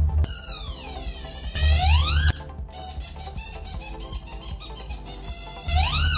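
Queaky electronic sound toy sounding a reedy tone through a circuit closed by a pencil graphite line. The pitch slides down, then back up, and cuts off suddenly after about two seconds; near the end a second quick rise and fall follows. The pitch follows the graphite path: the longer the line in the circuit, the higher its resistance and the lower the tone.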